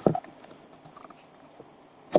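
Faint scattered clicks and taps against low background hiss, with one sharper click right at the start.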